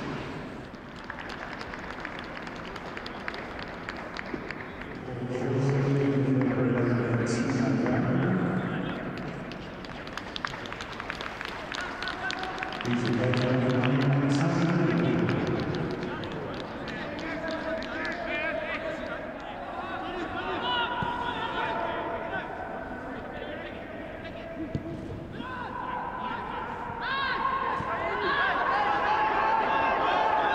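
Footballers and staff shouting and calling to each other across the pitch of an empty stadium, with no crowd noise, loudest in two stretches about five and thirteen seconds in. Short thuds of the ball being kicked come through between the calls.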